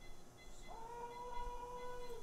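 A woman moaning in pain, a long high, held moan that starts under a second in. It is her pain response to pressure on a painful lumbar disc during awake spine surgery.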